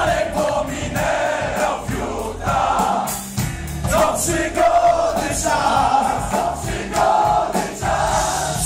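Heavy metal band playing live, with sung vocal phrases over guitars and drums and crowd voices mixed in.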